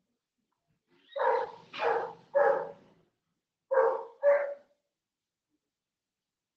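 A dog barking five times: three barks in quick succession, a short pause, then two more.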